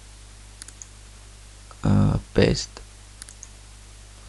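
A few soft computer mouse clicks over a steady low electrical hum, with a short spoken word or two about two seconds in.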